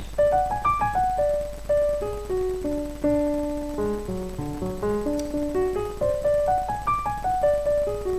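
Yamaha digital piano playing quick runs of single notes, one after another, each run stepping down in pitch from high to low.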